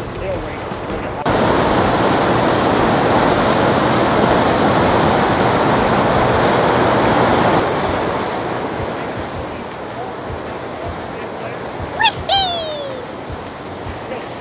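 Turbine discharge water from a hydroelectric dam churning in turbulent white rapids: a loud, steady rushing that starts suddenly about a second in and eases off after about eight seconds. Near the end comes a brief pitched sound that falls in pitch.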